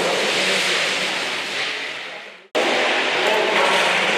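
Ice stock sliding over the hall's plastic playing surface: a steady rushing hiss that dies away, then an abrupt cut about two and a half seconds in, after which a similar rushing noise resumes.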